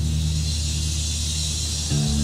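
Hardcore band recording: a low guitar and bass note held steady and ringing, with a hiss of cymbal wash above it and no drum hits in between riffs.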